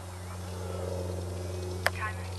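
Faint whir of a small electric RC-plane motor on a slow, high-alpha landing approach, swelling slightly in the middle over a steady low electrical hum. One sharp click comes near the end.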